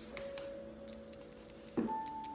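Soft background music with long held notes, under light, uneven taps of one hand striking the side of the other at the karate chop point. A brief louder sound comes near the end.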